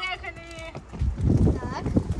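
Small plastic skateboard's wheels rolling over brick paving: a low rattling rumble over the joints between the bricks, starting about halfway through.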